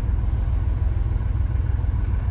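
Fishing boat's engine running steadily, a low, even rumble.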